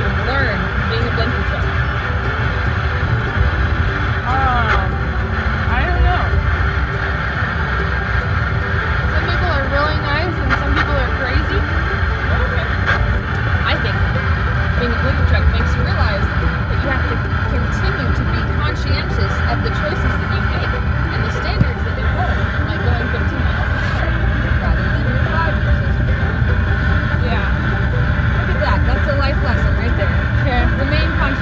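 Steady road and engine rumble heard from inside the cab of a pickup truck driving along.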